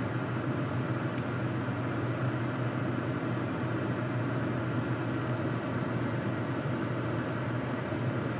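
Steady low hum with an even hiss of blowing air inside a parked truck's cabin, from the idling engine and the climate-control fan.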